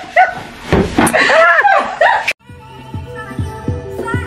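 A person's drawn-out wordless vocal sounds, rising and falling in pitch, then an abrupt cut about two-thirds of the way through to background music with repeated bass notes.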